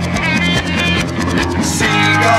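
Instrumental passage of late-1960s British psychedelic rock: electric guitar over bass and drums, with no singing. Near the end the band moves onto a long held low note.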